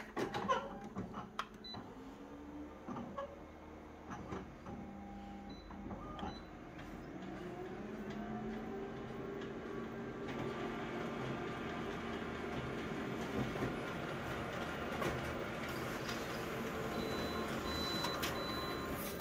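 Office colour photocopier making a copy: a few clicks at first, then the machine starts up with a rising whine about six seconds in, and runs steadily and gets louder as it prints.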